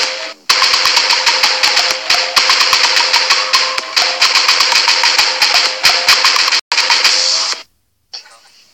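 Soundtrack of a remix clip: a fast, even run of sharp clicks, about seven or eight a second, over a steady hiss and a faint held tone. It drops out briefly near the end, then cuts off suddenly.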